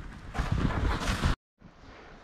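Wind rushing over a phone microphone, mixed with the crunch of footsteps sinking into deep snow. The sound cuts off abruptly a little past halfway, goes silent for a moment, then returns as a fainter rushing.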